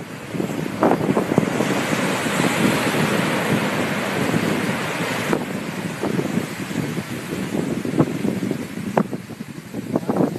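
Ocean surf washing up a beach, with wind buffeting the microphone. The rush swells over the first few seconds and drops off abruptly a little past five seconds in, leaving lower wash with a few short knocks.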